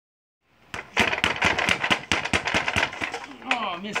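Boxing gloves punching a Ringside reflex bag in a fast run of sharp hits, about four a second. The run stops after about three seconds with a missed punch.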